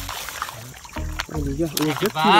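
A few sharp clicks of freshwater mussel shells knocking together as they are handled, with a man's voice talking quietly in the second half.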